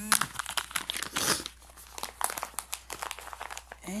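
Crinkly treat packaging being handled and opened, a dense, irregular crackling and rustling.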